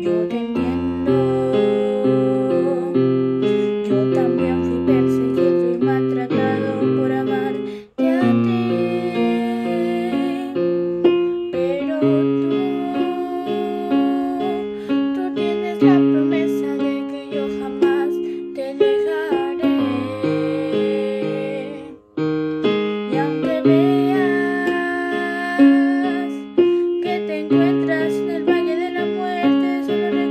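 Electric piano or keyboard accompaniment with a girl singing a Christian worship song over it, the music breaking off briefly twice.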